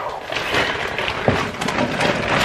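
A plastic shopping bag rustling and crinkling as groceries are taken out of it, with a couple of light knocks a little over halfway through.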